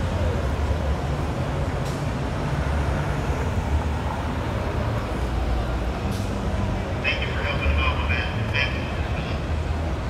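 Downtown street traffic at an intersection: a steady low rumble of passing cars, with a run of short high-pitched chirping tones from about seven to nine seconds in.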